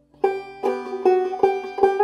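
Open-back banjo played clawhammer style: a short phrase of plucked notes that starts a moment in and runs on in an even picking rhythm, several strokes a second.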